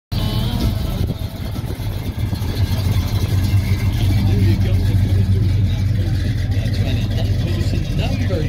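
Engine of a 1960s Chevrolet Chevelle running with a deep, steady rumble as the car rolls slowly past, a little louder about halfway through as it goes by closest.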